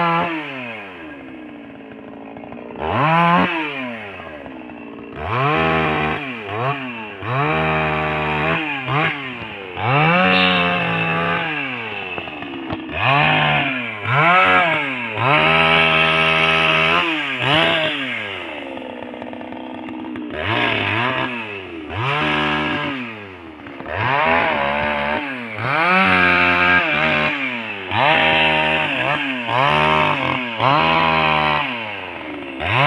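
Chainsaw revving up and falling back to idle over and over, about a dozen times, with some stretches held at full speed as it cuts pine wood.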